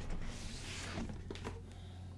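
Lid of a large cardboard board game box being slid off the box: a soft rush of cardboard sliding on cardboard, then a few light knocks as the box is handled.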